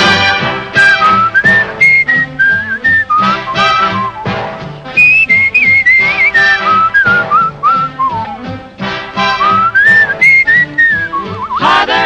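A man whistling a melody that glides up and down, over a swing big band playing short, punched rhythmic chords.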